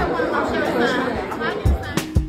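Indistinct chatter of several people talking in a room, with a short low thump near the end.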